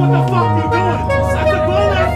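Saxophone playing long, steady held notes, a low note sinking slightly during the first second, with a man's voice shouting over it.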